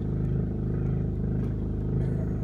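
Boat's generator running with a steady, even drone.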